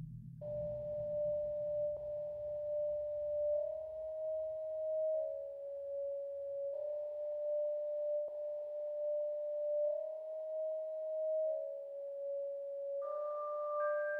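Synthesizer holding a single pure, sine-like note that steps slightly up and back down in pitch several times, its loudness wavering slowly. A second, higher note joins near the end.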